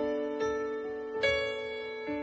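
Piano playing slow, ringing notes, with fresh notes struck about half a second in and again a little past one second, each left to sustain and fade.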